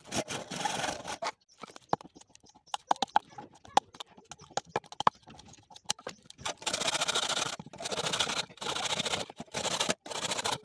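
Hand saw cutting through bamboo: a rasping stroke, then a run of sharp knocks and clicks from a knife chipping at the bamboo, then steady back-and-forth saw strokes about once a second.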